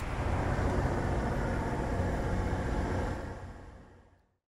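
Road traffic: a truck and car passing close by, a steady engine rumble with tyre noise that fades out near the end.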